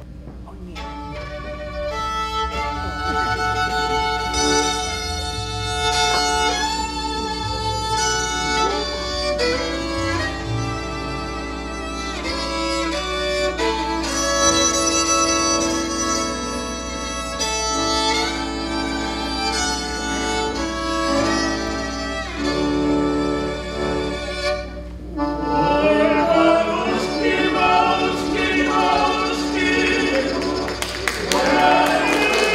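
Live ensemble of violin, flute, accordion, guitar and keyboard playing a Polish Christmas carol, with the violin carrying the melody. After a short break near the end, a group of voices comes in singing.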